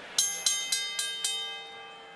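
Boxing ring bell struck five times in quick succession, about four strikes a second, ringing on and fading afterwards. It is the bell rung in the ring to call for the announcement of the judges' scorecards.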